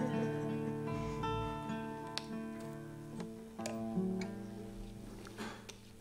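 Acoustic guitar being retuned: open strings plucked and left ringing, their pitch shifting as the tuning pegs are turned, with a few single plucks between. The ringing slowly fades away.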